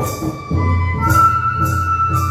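Traditional Bodo dance music: a flute playing long held notes over a steady beat of drum and cymbal strikes.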